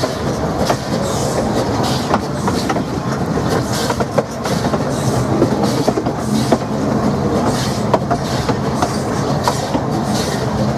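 Baldwin 4-6-2 steam locomotive working along the line: a steady run of regular exhaust beats, with sharp clicks and clanks from the wheels on the rails.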